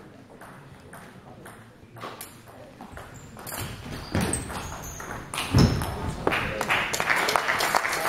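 Table tennis ball clicking back and forth on bats and table during a doubles rally in a sports hall. About five and a half seconds in there is a loud thud, then clapping and voices from the spectators near the end as the point ends.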